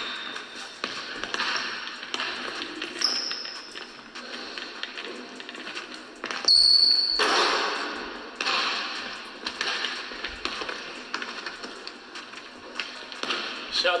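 A basketball is dribbled on a hardwood gym court in a string of bounces, with brief high sneaker squeaks now and then. The loudest moment comes about six and a half seconds in.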